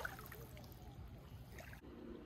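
Faint ambience of lake water lapping gently at a gravel shoreline, with no distinct events. It cuts off abruptly near the end.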